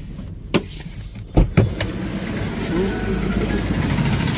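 Knocks and clunks of handling inside a car's cabin: a sharp click about half a second in, two loud thuds about a second and a half in, then a steady low rumble.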